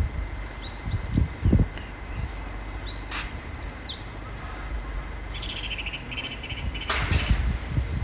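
Small birds chirping in short, quick high calls, some in a fast repeated run about halfway through, over a low rumble that swells briefly about a second in.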